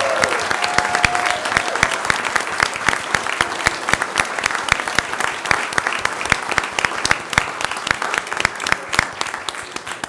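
Audience applauding: many people clapping together, with a few voices calling out in the first second or so, dying down toward the end.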